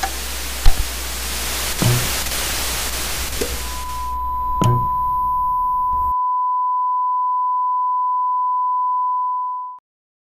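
Old television static hissing, broken by a few thumps, then cutting off suddenly about six seconds in. A steady, high test-pattern tone comes in under the static about three and a half seconds in, carries on alone after the static stops, and fades out just before the end.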